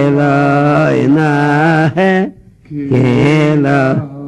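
A man's voice chanting a melody in long held notes, with a short break about two seconds in.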